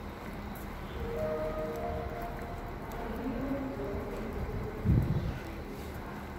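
Railway platform ambience: a steady low rumble with faint held tones over it, and a short low thump about five seconds in.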